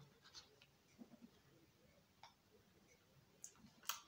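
Near silence: room tone with a few faint, short clicks scattered through the pause, and a sharper click near the end.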